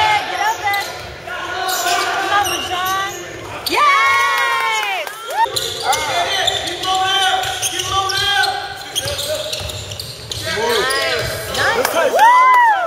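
Live basketball play in a gym: sneakers squeaking on the hardwood floor in short rising-and-falling chirps, loudest about four seconds in and again near the end, with the ball bouncing and voices echoing in the hall.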